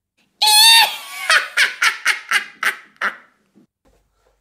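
A shrill, wavering shriek followed by a cackling laugh of about seven short bursts that fade out, starting and stopping abruptly out of dead silence like a horror sound effect.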